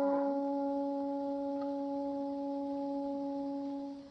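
Film score: a single brass note held and slowly fading, which stops just before the end.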